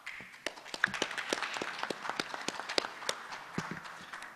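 Audience applauding: many pairs of hands clapping in a dense, steady patter.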